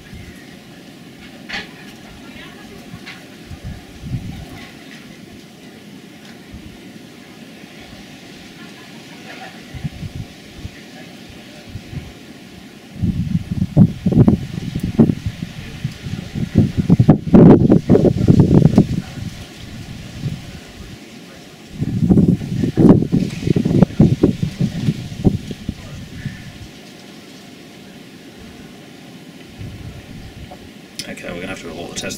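Two spells of wind buffeting the microphone, a long one about halfway through and a shorter one a few seconds later, over a low, steady outdoor background.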